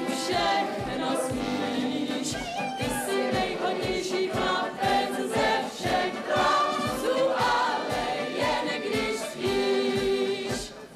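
A group of voices singing a song together to a band accompaniment, likely a Czech brass band, with a steady beat.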